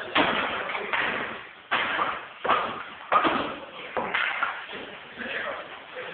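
A rowdy group of male cricket players shouting together in loud, unintelligible bursts, with sharp bangs about once a second, as their club victory chant gets going.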